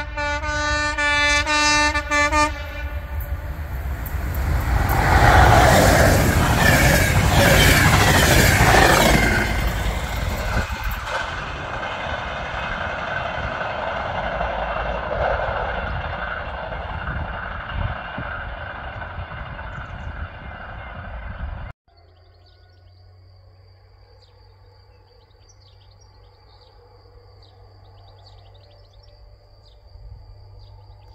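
A locomotive horn sounds for about two and a half seconds, then a freight train passes close by, loudest a few seconds later and easing to a steady rumble of wheels on rail. About twenty-two seconds in, it cuts off abruptly to quiet countryside with faint insect sounds.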